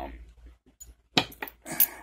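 Padlocks handled on a workbench mat: a few light metal clicks and clinks as one padlock is set down and a brass padlock picked up. A man's voice comes in over the last part.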